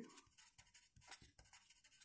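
Near silence with faint, scattered ticks and scratches of a pen writing.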